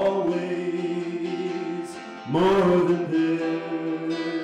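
Live acoustic guitar strummed under long, wordless sung notes from a man's voice, in two sustained phrases, the second starting a little over two seconds in.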